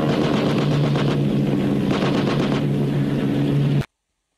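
Film soundtrack of a biplane's engine droning steadily, with several short bursts of rapid machine-gun fire over it. The sound cuts off abruptly near the end.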